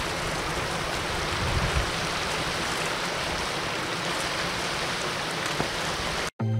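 Shallow river water running and splashing in small cascades over rock ledges: a steady rushing noise.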